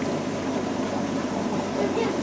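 Steady hum and hiss of running aquarium equipment, with a faint constant low hum tone.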